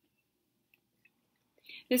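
Near silence in a pause, broken by two faint clicks, then a short intake of breath and a woman starting to speak near the end.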